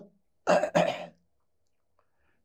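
A man clearing his throat with two short coughs in quick succession, about half a second in.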